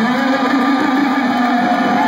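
Loud live hard rock from a concert stage: an amplified electric guitar holds a long low note while higher notes slide up and down above it.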